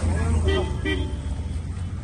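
A low, steady motor hum, strongest for the first second and a half and then easing, with short bursts of voices over it.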